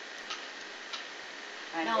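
A lull in conversation: steady hiss with a few faint ticks, then a woman's voice comes back in near the end.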